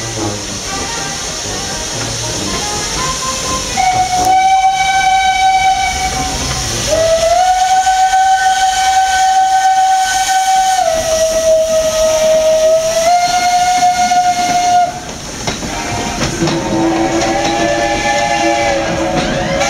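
Steam locomotive whistles blowing as two engines depart together, over a background of escaping steam. There is a short blast about four seconds in, then a long one that dips in pitch partway through and stops about fifteen seconds in. Near the end the coaches roll past with rail noise.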